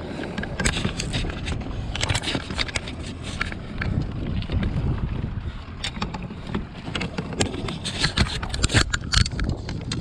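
Handling noise of a landing net with a salmon in it on a plastic kayak deck: rustling and many irregular clicks and knocks as hands work at the net and fish, over a low rumble.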